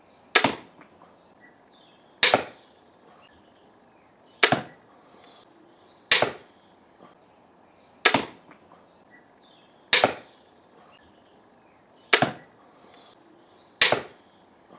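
Eight sharp crossbow shots about two seconds apart, each a single crack of the string and limbs releasing that dies away within about half a second: a Junxing Drakon 100 lb mini compound crossbow and a Redback pistol crossbow shot for a comparison of their sound.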